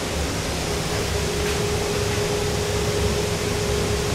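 Steady mechanical hum and rushing noise, with a steady mid-pitched tone that comes in about a second in and holds.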